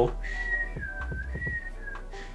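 A man whistling one long, nearly level note that dips slightly about halfway through, comes back up, and eases down near the end.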